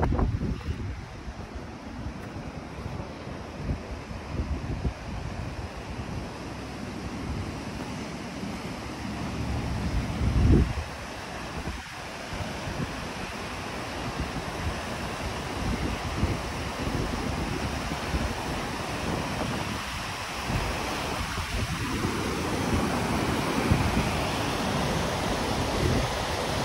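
Fast mountain river rushing over rocks, a steady wash of water noise that grows louder in the second half. Wind buffets the microphone in uneven low gusts, strongest about ten seconds in.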